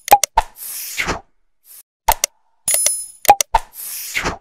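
Sound effects of an animated like-and-subscribe button: a run of sharp clicks and pops, some with a short bright ring, and a whoosh about half a second in and another near the end.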